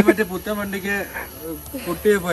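Speech: a person talking in Malayalam, with a faint steady hiss behind.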